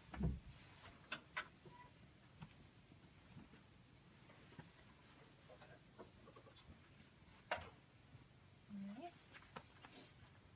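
Quiet handling of bed sheets on a mattress: a few soft knocks and rustles as linens are tucked and moved, the loudest just at the start. A brief low vocal sound near the end.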